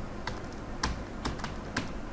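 Computer keyboard being typed on: several separate keystrokes, about two a second, over a faint steady low hum.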